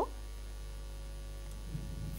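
Steady low electrical mains hum, with faint thin tones above it.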